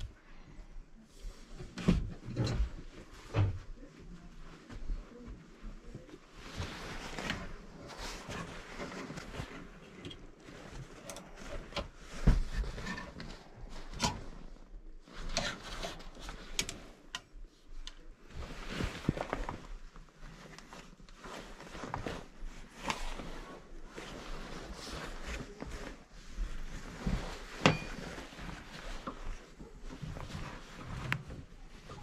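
At first, books being shifted on a shelf. Then clothes hangers slide and clack along a metal closet rod and garments rustle as they are pushed aside: an irregular string of sharp clicks, scrapes and fabric rustles.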